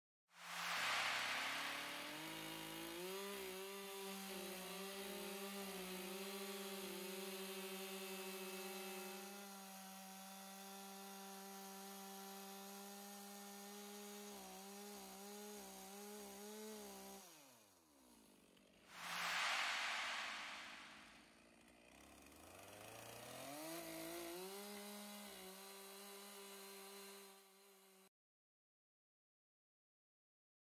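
Chainsaw cutting lengthwise along a log to rough out a belly groove, the engine held at a steady high pitch under load. About 17 seconds in, the pitch drops away, the saw gives a loud rev, then it climbs back up and carries on cutting until the sound cuts off suddenly near the end.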